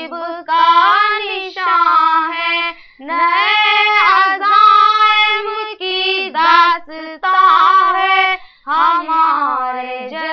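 A young female voice singing Urdu verse unaccompanied, in short phrases with held, ornamented notes that bend and waver in pitch.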